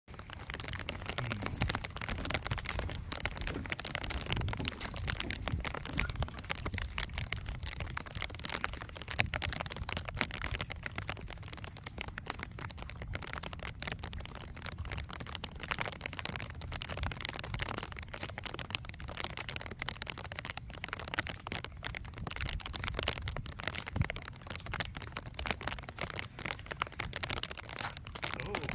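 Heavy fishing reel clicking quickly and irregularly as a hooked fish is fought on a surf rod, over a steady low rumble of wind on the microphone.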